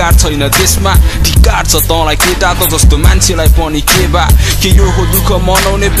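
Hip hop track: a rapped vocal line over a beat with heavy bass and sharp, regularly spaced drum hits.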